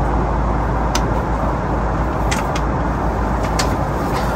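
Steady cabin noise of an airliner in flight: a deep, even rumble of engines and rushing air, with a few small clicks and knocks over it.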